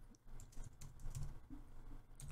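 Computer keyboard typing: a quick, irregular run of light key clicks.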